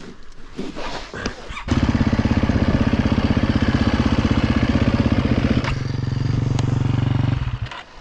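Husqvarna enduro dirt bike engine running at low, steady revs with an even pulsing beat. It comes in abruptly about two seconds in, eases down a little near six seconds and cuts off shortly before the end, after a few light knocks at the start.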